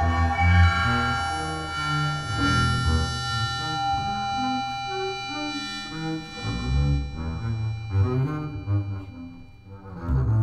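Double bass playing a series of short low notes under several steady, sustained high electronic tones: an experimental piece for bass and electronics.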